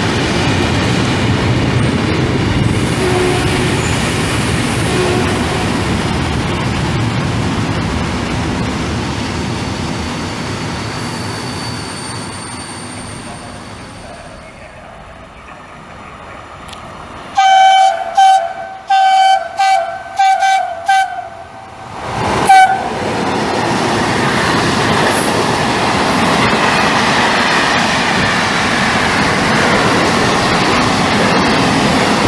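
Freight train wagons rolling past and fading away; then an approaching freight locomotive's horn sounds a quick string of about eight short toots, a driver's greeting. The train then passes, its wagons rolling by steadily.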